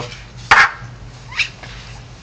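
Two short calls from a pet animal: a loud one about half a second in, then a weaker one that rises in pitch.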